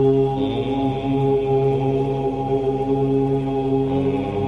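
Voices chanting a long, drawn-out "Om" over a steady drone, with a fresh chant swelling in about half a second in.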